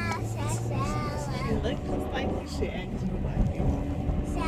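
Voices inside a moving minivan: a young child's high-pitched voice and brief adult talk over the steady low rumble of the road.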